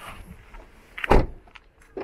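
Car door shutting with one short, heavy thud about a second in, after a low hiss of car-interior noise, followed by a smaller click near the end.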